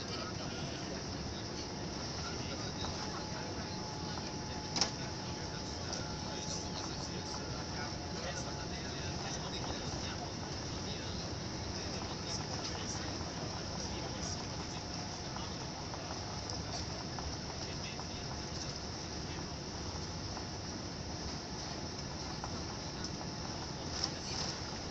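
Steady jet-airliner cabin noise, engine and airflow rumble heard from a window seat over the wing while the aircraft rolls along the ground, with one sharp click about five seconds in.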